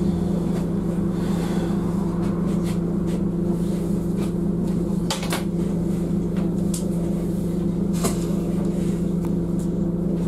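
Bus engine idling while the bus stands still, a steady low hum with a few irregular sharp clicks and rattles on top.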